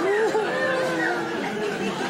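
Voices talking over one another in a large room, like chatter.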